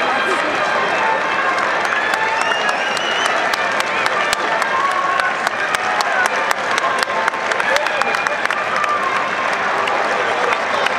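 Football stadium crowd applauding, the hand claps growing denser a couple of seconds in, over a steady mass of voices calling out and chatting.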